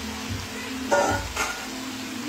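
Ackee and chicken frying and sizzling in a pan on the stove, with a short sharper sound a little past halfway.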